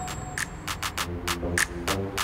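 Outro music: a quick, steady percussion beat, with held chord tones coming in about a second in.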